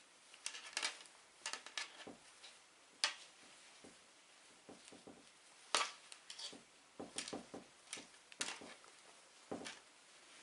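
Faint, irregular light clicks and rustles of hands and fingernails handling a crochet hat on a table, the sharpest clicks about 3 and 6 seconds in.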